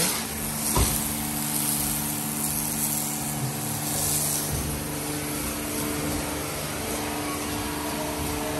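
High-pressure car-wash sprayer running steadily: the pump's constant hum under the hiss of water jetting onto a car body.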